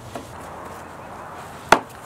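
A box set down on a table with a single sharp knock near the end, after a faint click near the start.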